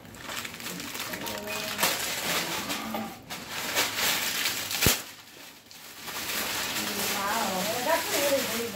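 Plastic shrink wrap crinkling and rustling as it is pulled off a cardboard box, with one sharp knock about five seconds in.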